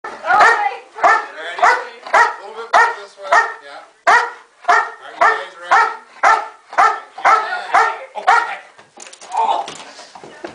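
A trained protection dog, a German Shepherd, barking on its leash at a bite sleeve: a steady run of about fifteen barks, nearly two a second. The barking stops near the end as the dog charges and grabs the sleeve.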